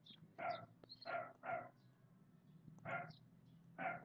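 A dog barking five times in short, separate barks over a low steady hum.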